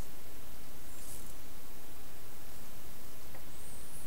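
Steady, even hiss of the recording's background noise, with two faint high squeaks about a second in and near the end.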